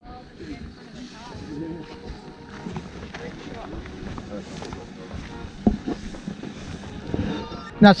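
Outdoor ambience of people talking at a distance, with faint music under it and a couple of sharp knocks about two-thirds of the way through; a man starts speaking close by at the very end.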